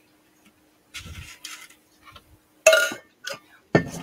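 Someone taking a drink and handling the drink container: a soft low noise about a second in, then a sharp clink near three seconds, a few small ticks, and a knock just before the end.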